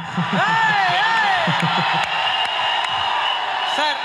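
Large audience cheering and screaming, with loud shouted whoops in the first second or so and a shrill held note rising out of the din in the second half; a man starts speaking just before the end.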